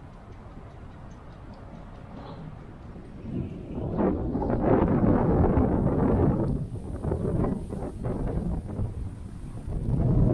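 Wind gusting on the microphone: a low rumble at first, then a loud gust about three seconds in that swells and eases unevenly through the rest.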